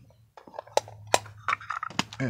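Hard plastic toys and a clear CD jewel case being handled and moved by hand, giving a run of sharp clicks and light clatter that begins about half a second in.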